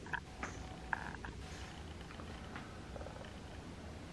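A glass sliding door being opened: a few sharp clicks and a low rolling rattle along its track. Short runs of rapid, pulsed chirping come at the start and again about a second in.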